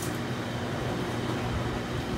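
Over-the-range microwave oven running, a steady low hum.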